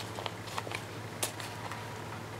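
Faint handling sounds of sewing a paper journal by hand: a few soft ticks and rustles as the black paper pages are handled and a bookbinding needle is worked into a hole in the fold, over a low steady hum.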